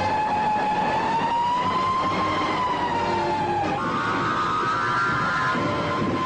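A loud, wavering, siren-like tone that rises slowly and falls again. At about two-thirds of the way through it jumps up and holds steady, and a cluster of higher tones joins in.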